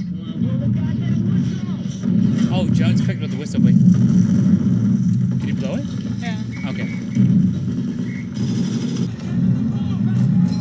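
Soldiers shouting urgent orders to one another in a war-drama soundtrack, over a steady low rumble with a few sharp cracks.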